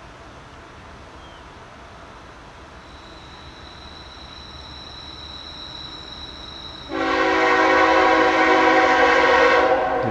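Freight locomotive air horn sounding one long multi-note chord, starting suddenly about seven seconds in and held for nearly three seconds, as the Norfolk Southern train led by GE unit NS 8104 approaches the grade crossing. Before the horn, the rumble of the approaching train slowly grows louder.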